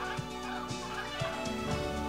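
Hyacinth macaws calling a few times over soft background music.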